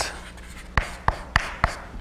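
Chalk writing on a blackboard: a faint scratching stroke, then four sharp taps of chalk against the board in quick succession.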